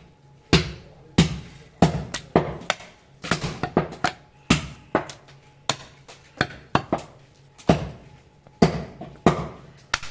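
Heavy butcher's cleaver chopping a goat leg on a wooden log chopping block: sharp thuds in uneven runs, one to three a second, with lighter knocks between.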